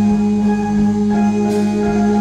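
Electronic keyboard playing held chords, with a steady low beat of about three pulses a second underneath.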